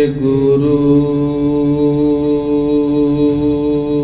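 Devotional chant: a voice holding one long, steady note, with a short break about half a second in.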